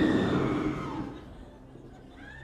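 The fading tail of a loud, sudden boom sound effect, dying away over about a second and a half.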